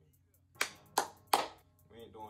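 Three sharp hand claps in quick succession, about a third of a second apart, each with a brief room echo.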